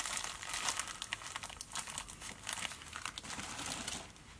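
A clear plastic packet of pearl dubbing crinkling as it is handled and a pinch is pulled out: a fast, irregular run of small crackles.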